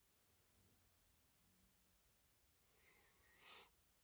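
Near silence: room tone, with one faint short hiss near the end.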